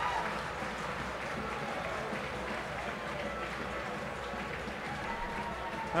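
Rugby league stadium crowd ambience just after a try is scored: a low, steady murmur of the crowd with light applause.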